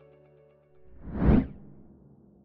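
The last held notes of background music fading out, then a whoosh sound effect that swells about a second in, peaks sharply and dies away into a low hum.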